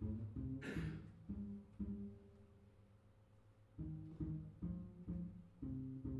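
Upright double bass played pizzicato: a run of plucked low notes, with a short swish less than a second in. The notes thin out to a lull in the middle and resume near four seconds.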